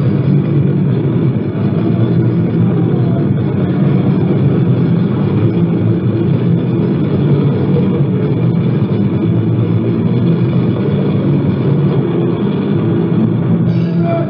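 Lo-fi live cassette recording of a thrash/punk band playing an instrumental stretch of a song with no singing: a dense, steady wall of guitar and bass, dull and muffled with the top end cut off by the tape.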